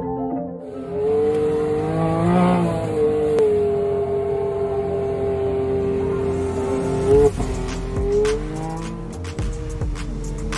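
Can-Am side-by-side's engine running at speed under music, its pitch holding steady for several seconds and then rising twice as it accelerates. Sharp knocks come in over the last few seconds.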